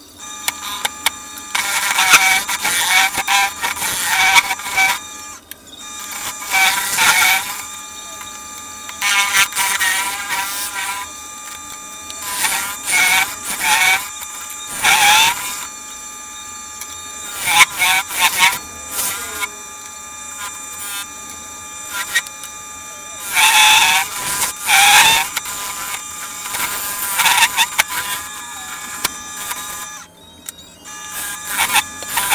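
Wood lathe running with a turning tool hollowing the inside of a sycamore lid: repeated bursts of cutting noise with a wavering squeal from the tool on the wood, about eight cuts a few seconds apart, over the lathe's steady whine.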